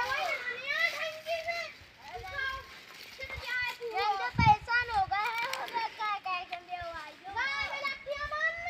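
Children's high-pitched voices calling out and chattering almost without pause, with no clear words. There is a short low thump about four and a half seconds in.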